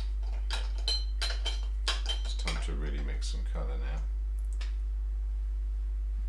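A quick run of light clinks with a short, high ring, painting tools knocking against glass, followed by a brief low mumble from a voice.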